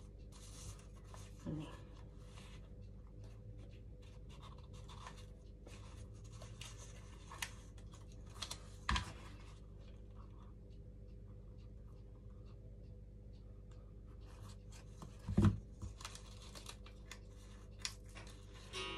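Paper rustling and crinkling as paper flower petals are pinched and shaped by hand, over a steady low hum. A single sharp knock about nine seconds in.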